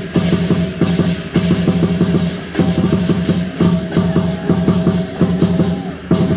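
Chinese lion dance percussion: a large drum and hand cymbals playing a fast, driving beat of about five strikes a second, broken by short pauses between phrases.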